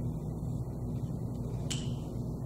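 Steady low hum of room tone, with a single short sharp click about a second and a half in.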